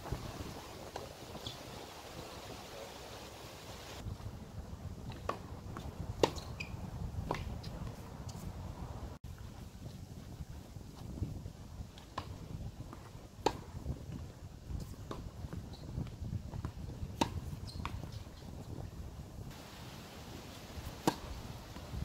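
Tennis ball being struck by rackets and bouncing on a hard court during rallies: a scattered series of sharp pops a second or more apart, the loudest about six seconds in. Wind rumbles on the microphone beneath.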